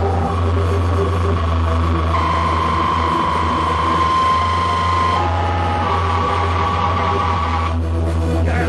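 Live electronic witch house music: a heavy, steady bass drone under sustained synth notes that step to a new pitch every few seconds, with a short break in the upper sound just before the end.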